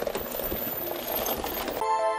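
Vehicle engine and road noise from a pickup truck driving on a rocky dirt track. Near the end it cuts off and a sustained music chord begins.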